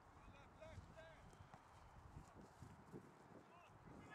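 Near silence: faint distant shouts and calls from rugby players across the pitch, over irregular low thuds.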